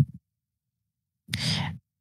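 A short audible breath from the speaker, about one and a half seconds in, between stretches of dead silence.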